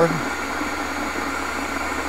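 Homemade Tesla-type coil running, giving a steady hiss with a low hum beneath it.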